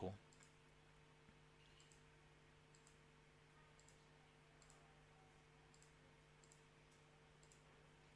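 Near silence broken by faint computer mouse clicks, roughly one a second, as options are picked from drop-down menus, over a faint steady electrical hum.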